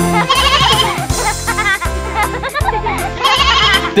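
Instrumental nursery-rhyme music between sung verses, with a cartoon lamb's wavering bleats over the beat.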